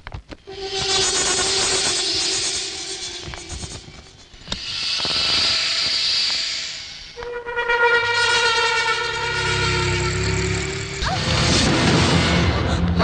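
Dramatic film background music: long, held synthesizer chords that swell and fade, with a hissing swell between them and a deep low drone entering about two-thirds of the way in.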